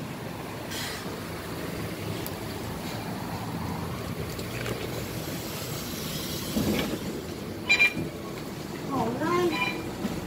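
MAN A22 city bus's diesel engine running steadily while stopped to board passengers. Two short sharp sounds stand out just before eight seconds in, and a voice is heard near the end.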